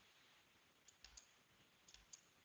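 Near silence, broken by a few faint, short clicks about a second in and again near the end.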